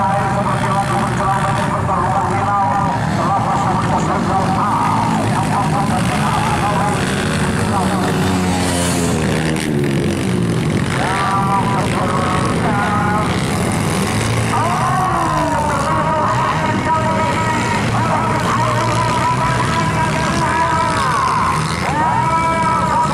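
Several dirt bike engines running at high revs, their pitch climbing and dropping as the riders open and close the throttle around the track.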